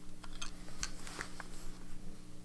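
TWSBI Diamond 580 AL fountain pen's medium steel nib on notebook paper, making a few faint ticks and light scratches as it is set down and starts writing. A steady low hum runs underneath.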